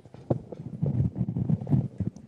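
Handling noise on a live microphone: a run of muffled, irregular knocks and rubs, louder toward the end, as the roving microphone is carried and handed to a questioner.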